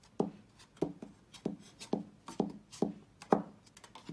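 A thin tool pressed and tapped repeatedly against the glued cardstock bottom of a small paper bag, giving a series of short dull knocks, about two a second, as the bottom tab is pushed down to stick.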